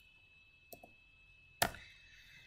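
Computer keyboard keys: two light taps, then one sharp, louder key strike about a second and a half in, as a cell entry is typed and confirmed with Enter.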